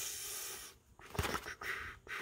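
A cardboard trading-card box handled and turned over in the hands: a soft rustling hiss for the first half-second, a brief hush, then a few light taps and scrapes.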